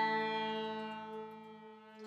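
Live accordion and saxophone ensemble holding a sustained chord that fades away steadily, with a new chord struck right at the end.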